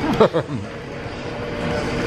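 A brief vocal sound from a man near the start, then the steady hum of a restaurant dining room.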